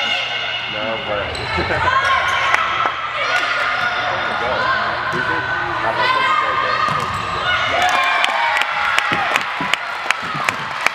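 Indoor volleyball rally in a gymnasium hall: the ball smacked and bouncing on the hardwood floor, with players and spectators shouting. Near the end, quick sharp claps and cheers start as the rally ends in a point.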